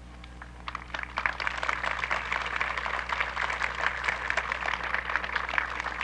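Outdoor audience applauding, rising to a steady clapping about a second in.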